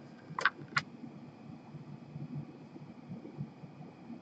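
Two light, sharp clicks about a third of a second apart in the first second, from a trading card in a rigid plastic holder being handled with cotton-gloved hands; after that only faint low room noise.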